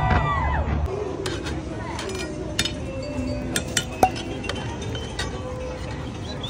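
Sharp metallic clinks and clanks from a Turkish ice cream vendor's long metal paddle striking the steel lids and wells of his cart, a dozen or so strikes at uneven intervals, the loudest about four seconds in, over voices. In the first second a low rumble with gliding tones cuts off abruptly.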